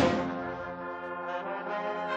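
Cornetas y tambores band (bugles and drums) playing a Semana Santa processional march: a loud percussion stroke at the start, then a long held bugle chord.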